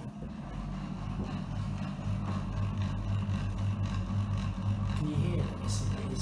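Bathroom ceiling extractor fan switched on and running with a steady motor hum.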